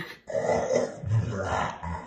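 A man making a rough, wordless vocal noise like a garbled growl or grunt, lasting most of two seconds, to act out his taste buds' reaction to a strawberry-habanero hot sauce.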